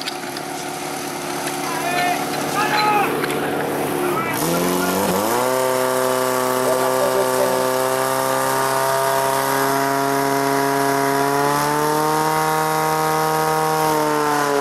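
Portable fire pump's engine revved up sharply about four seconds in and then held at a high, steady pitch at full throttle while pumping water out to the attack hoses, edging a little higher near the end. Shouts are heard before the engine opens up.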